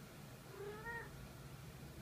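A black-and-white domestic cat gives one short, quiet meow about half a second in, rising slightly in pitch at its end.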